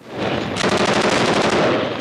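A long burst of rapid automatic-weapon fire: many fast shots run together, swelling in over the first half second and easing off just before the end.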